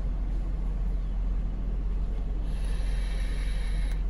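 Steady low rumble of a car idling, heard from inside the cabin. A soft hiss comes in a little past halfway as a vape pen is drawn on.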